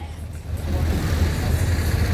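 Street traffic: a motor vehicle running with a steady low rumble, its noise swelling about half a second in and holding.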